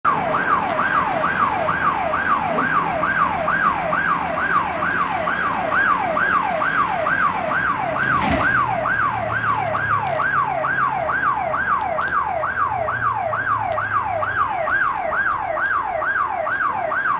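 An electronic siren wailing in a fast, even up-and-down sweep, a little over two cycles a second, with a single sharp thud about halfway through.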